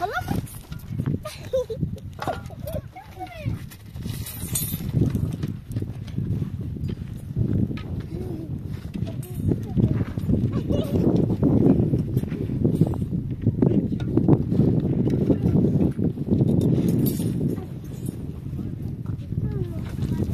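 People's voices talking and calling, over a low rumbling noise that grows louder about a third of the way in.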